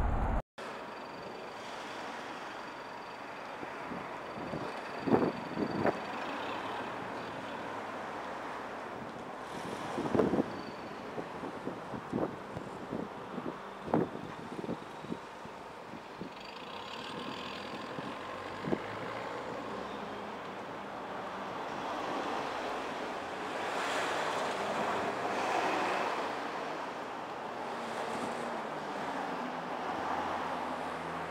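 Street traffic noise on wet, slushy roads: a steady hiss of tyres and engines that swells as a vehicle passes about three-quarters of the way through. A few short, sharp knocks in the first half.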